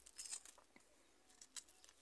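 Faint crinkling of a clear plastic CD wrapper being handled: a few soft rustles in the first half second, then near silence.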